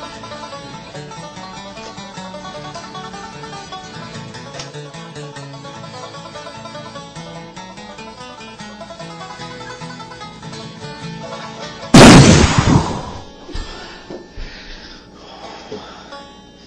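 Banjo music plays steadily; about twelve seconds in, a single sudden, very loud blast as a homemade sulfur and magnesium firework mixture goes off, dying away over a second or so. The blast comes from too much magnesium in the mixture.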